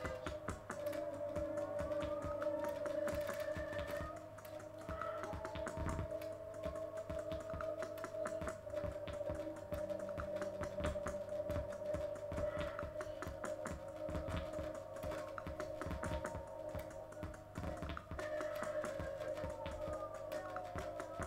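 Experimental electronic noise music from vintage synthesizers: a steady held drone with thin tones sliding up and down above it, over dense, irregular clicking.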